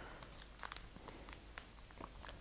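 Faint, scattered small clicks and rustles of fingers handling seeds and their packet at a table.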